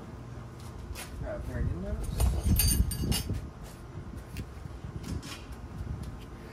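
Scattered clicks and light metallic clinks of a Subaru CVT valve body and its transmission solenoids being handled on a bench, with a louder bout of clattering about two to three seconds in.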